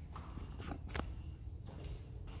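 Footsteps of a person walking: a few short steps in the first second, over a steady low rumble.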